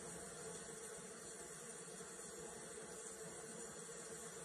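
Faint steady hiss of room tone and recording noise, with no distinct sound event.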